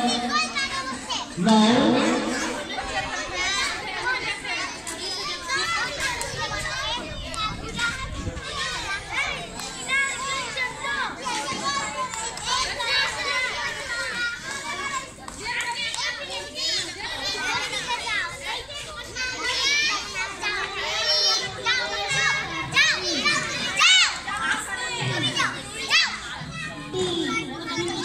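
A crowd of young children chattering and calling out all at once, many high voices overlapping without a break.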